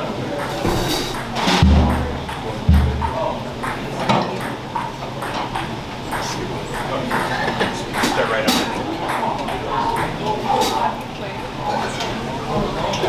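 A jazz band readying itself before a tune: low talk, two low electric bass notes about two seconds in, and scattered stray taps on the drums and cymbals, with no full ensemble playing yet.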